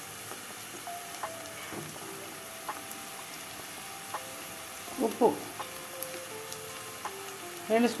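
Chopped onions, green chillies and curry leaves sizzling steadily as they fry in oil in an aluminium pot, with faint melodic tones over the hiss and a brief louder burst about five seconds in.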